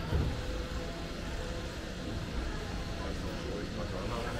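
Pedestrian street ambience: a steady low hum of motor vehicles, with faint voices of passers-by.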